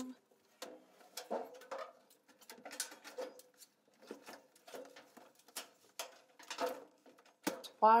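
Scattered knocks, bumps and scrapes of a washing machine being tilted and shuffled by hand across a floor, with a few short vocal sounds between them.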